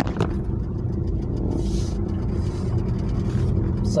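Steady low rumble of engine and tyre noise heard inside a moving car's cabin.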